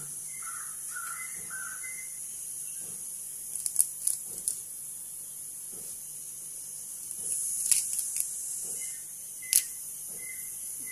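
Fresh herb leaves being plucked off their stems by hand, with light rustling and a few sharp snaps or clicks near the middle and end, over a steady hiss.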